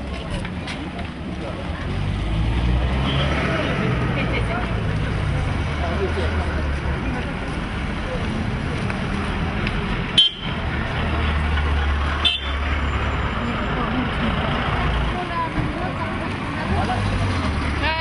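Street ambience: a steady low rumble of traffic with vehicle engines close by, under the voices of people talking. About midway the sound briefly drops out twice.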